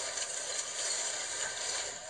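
Steady noisy rattling and clatter of a building shaking in an earthquake, from the field audio of a news clip.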